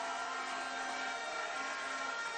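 Crowd of supporters cheering in a large hall, with long steady horn notes sounding over the cheering.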